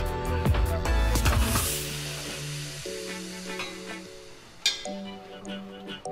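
Background music: deep bass for the first second and a half or so, then lighter sustained chords. A single sharp click sounds near the end.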